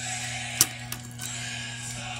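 Background music over a steady low hum, with a sharp click a little over half a second in and a lighter one just after: a hard plastic toy dinosaur figure knocking against a wooden table as it is handled.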